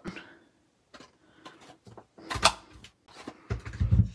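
A hand-held craft punch snapping shut through a layer of cardstock with one sharp clack about halfway through, after a few light clicks of handling. A duller thump follows near the end.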